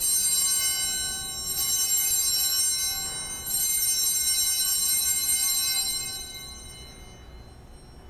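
Altar bells (Sanctus bells), a set of small bells, rung three times with high, shimmering rings that fade out together about seven seconds in. They mark the consecration and elevation of the host at Mass.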